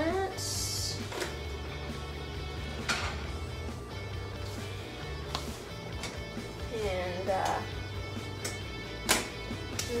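Background music with a steady bass line, under a few light knocks from kitchen handling and a short hiss about half a second in. A brief murmured voice comes in a little past the middle.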